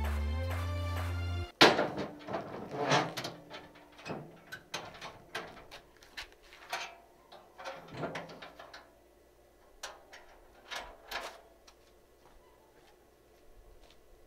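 Background music that cuts off about a second and a half in. Then the steel rear doors of a PJ dump trailer are swung shut and latched: one loud clang, followed by a run of metal clanks and latch rattles that thin out about eleven seconds in.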